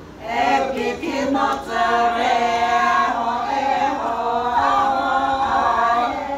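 A group of Naga women singing together unaccompanied, several voices holding long notes in unison. The voices drop out briefly at the start, then come back in.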